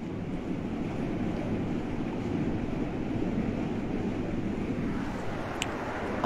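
Steady rushing room noise in a large prayer hall with ceiling fans overhead, and a short, thin high-pitched click about five and a half seconds in.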